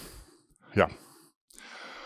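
A man's breathing into a lapel or head microphone, with a short spoken 'yeah' about a second in. A soft breath out comes at the start and an audible breath in comes near the end.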